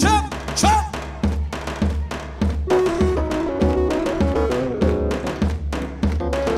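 Live band dance music with a keyboard: a steady, strong drum beat under a keyboard melody, with a short sung phrase in the first second.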